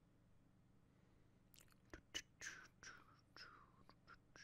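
Near silence, then from about a second and a half in, faint whispering with small mouth clicks.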